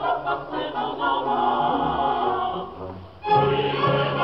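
Opera ensemble: several voices singing together with orchestra, a short lull near the end before the voices come back in strongly.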